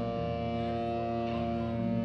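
Live band playing an instrumental passage: held keyboard chords with electric guitar over a bass line. The bass note shifts just after the start and again near the end.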